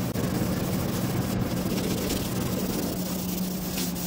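Dried primer on a car fender being hand-sanded with P400 abrasive on a foam pad, over a steady mechanical hum.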